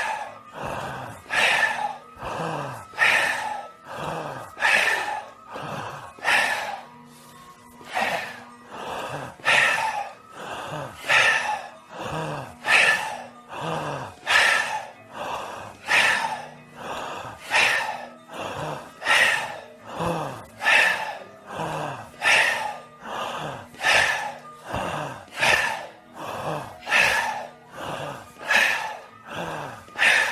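A group of people forcefully breathing out with a breathy "he" sound, over and over in a steady even rhythm, in time with a chest-pumping breathing exercise.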